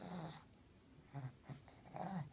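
A pug's short grunts and snuffles: one noisy burst at the start, then a few shorter ones later on.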